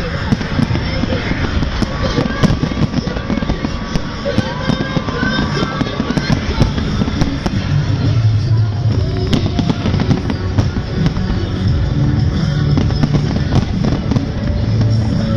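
Fireworks display: shells bursting in a rapid, irregular run of bangs and crackles, with music playing underneath.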